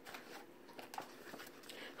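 Faint handling of a picture book as its page is turned: a soft paper rustle with a few light clicks about a second in.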